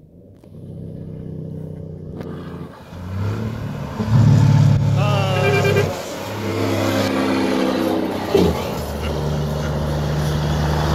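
Volvo FH articulated truck driving past close by, its diesel engine loud with a deep steady note that shifts pitch several times, loudest about four to six seconds in as the cab comes alongside.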